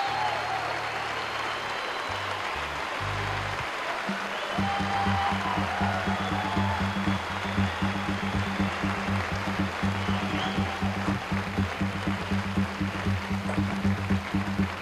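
Live band music: held low notes at first, then about four and a half seconds in a steady drum beat with pulsing low notes starts, about two beats a second.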